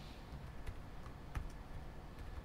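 Computer keyboard typing: a handful of faint, irregularly spaced keystrokes.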